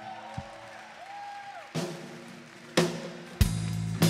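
Live rock band music: a quiet passage of sustained tones that glide slowly in pitch, broken by two drum hits about a second apart. The full band with drum kit and bass comes in louder near the end.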